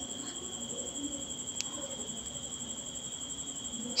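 An insect trilling steadily at a high pitch, with one faint click about one and a half seconds in.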